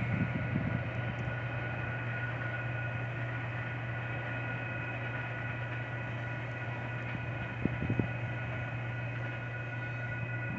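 Distant diesel freight locomotives idling: a steady low hum with a few faint, steady high-pitched whine tones. Two short thumps come near the end.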